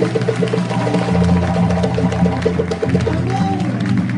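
Live music with drums keeping a quick, steady beat over held low notes.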